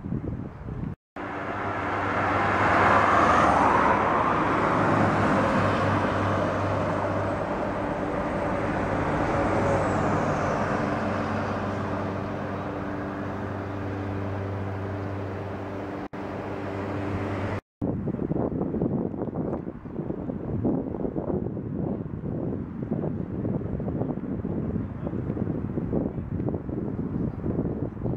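City bus engine running with traffic noise as the bus drives along the road, a steady hum that is loudest a few seconds in and slowly eases. It cuts off abruptly after about seventeen seconds and gives way to wind buffeting the microphone.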